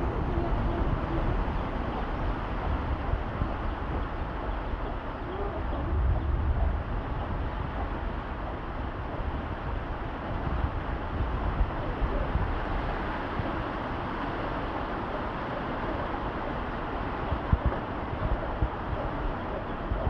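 Heavy rain falling steadily on a corrugated metal (lámina) sheet roof, a continuous even hiss with a low rumble underneath.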